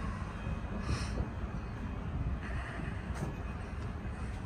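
Steady low rumble of outdoor background noise with a few faint, scattered knocks.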